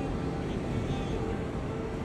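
Steady low rumble of a vehicle cabin, with faint music over it.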